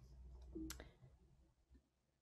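Near silence with a low background hum, and a single faint click about two-thirds of a second in.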